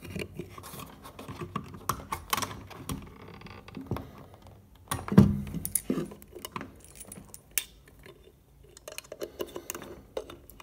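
Metal RCA plugs and speaker-wire leads being handled and pulled from an amplifier's back panel: scattered small clicks and light metallic rattling, with one louder knock about five seconds in.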